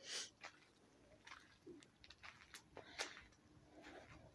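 Near silence, with a few faint scuffs and clicks scattered through it.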